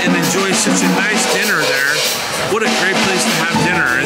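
A live jazz band playing, with people's voices talking over the music.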